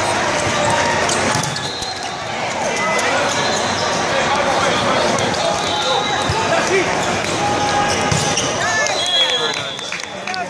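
Indoor volleyball rally in a large, echoing hall: a steady hubbub of many voices with sharp hits of the ball being played, and short squeaks near the end.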